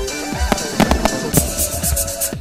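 Aerial fireworks bursting with sharp bangs and a dense crackle in the second half, over electronic dance music with a steady kick-drum beat about twice a second.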